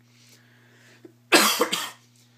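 A man coughing, two quick coughs close together about a second and a half in.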